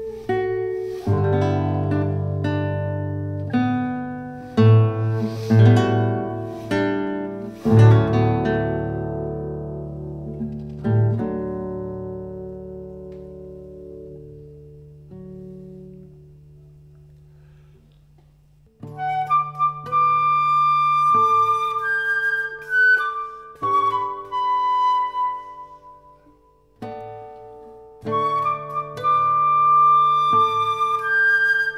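Instrumental duet of guitar and flute. Plucked guitar chords ring and die away over the first half, fading almost to silence. About two-thirds of the way in, the flute enters with long held notes over the guitar.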